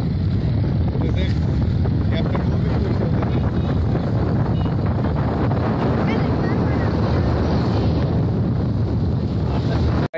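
Wind buffeting the microphone on a boat's open deck, a steady low rumble, with faint voices in the background.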